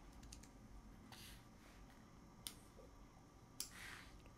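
Near silence: room tone with a few faint clicks from working a computer, the two sharpest about two and a half and three and a half seconds in.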